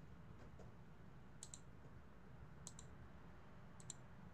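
Computer mouse clicking, three quick double clicks about a second apart, faint over a low steady hum.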